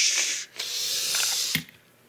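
Two hissing 'pshh' noises, a strong one ending about half a second in and a softer one lasting about a second, made with the mouth as a play sound effect. A faint click follows near the end.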